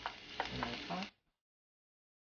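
Garlic sizzling in hot coconut oil in a pot, with a few sharp clicks over the hiss. The sound cuts off abruptly about a second in, leaving silence.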